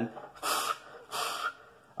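A man taking two sharp, forceful breaths, each about a third of a second long and half a second apart. They are the bracing breaths that push the abdominal wall out against a weightlifting belt before a squat.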